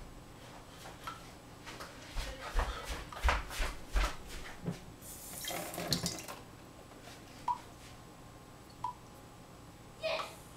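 Light clicks and knocks of things being handled in a kitchen, with a few low thumps, then a brief burst of hiss lasting about a second and two small clicks later on.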